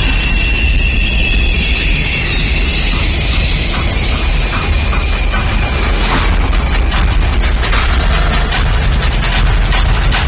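Dramatic background score: a heavy low drone with a high held tone that fades over the first few seconds, then a run of sharp, ticking percussive hits from about six seconds in.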